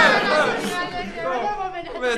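Speech: a man and a woman talking over each other in high spirits.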